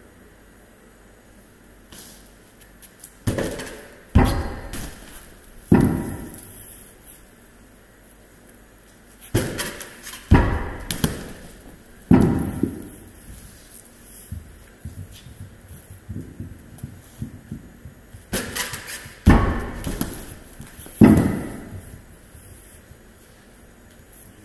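Heavy atlas stones thudding onto a wooden platform and onto the floor, each impact loud and echoing in a large metal-clad shed. The thuds come in three groups of two or three, several seconds apart.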